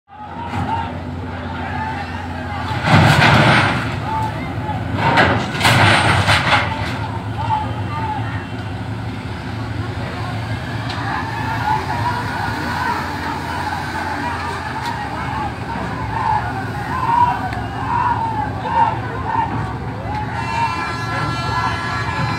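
Truck engines running with a crowd of voices shouting over them. Two loud rushing bursts come a few seconds in, and a steady horn starts sounding near the end.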